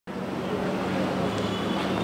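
Outdoor ambient noise with a steady low mechanical hum, as from an engine running nearby.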